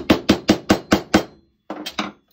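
Small hammer tapping a tiny tack into the butt end of a hickory golf club's wooden shaft to fix the end of a leather grip: a quick run of light, even strikes, about five a second, that stops a little over a second in.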